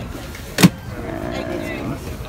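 A single sharp thump a little over half a second in, followed by faint voices.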